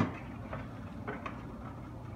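A few faint, short clicks and taps from a metal pot and a plastic colander being handled over the sink while browned ground meat drains.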